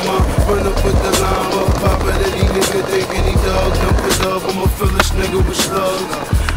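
Hip-hop beat with heavy bass, mixed with skateboard sounds: the wheels rolling on concrete and scattered sharp clacks of the board.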